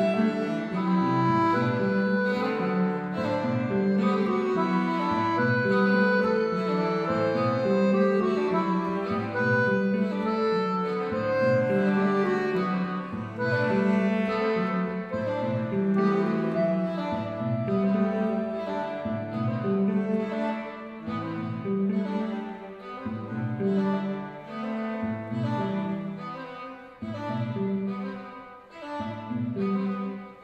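Violin, cello, piano accordion and hollow-body electric guitar playing together: sustained bowed melody notes over a repeating low pulse. The music drops quieter near the end.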